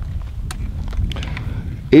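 A low steady rumble with a few faint, sharp clicks from handling a Marlin 1894 lever-action rifle.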